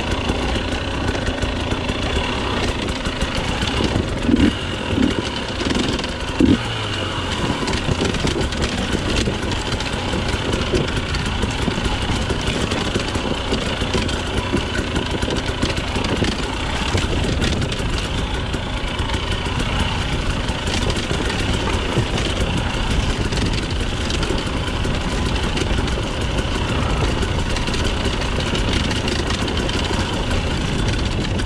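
Husqvarna TE 250i two-stroke enduro motorcycle engine running at low revs while the bike is ridden along a dirt trail, with a few short louder bursts about four to six seconds in.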